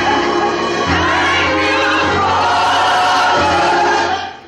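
Gospel choir singing together with a woman leading them. Steady low accompaniment notes sit underneath and shift pitch about a second in and again near the end.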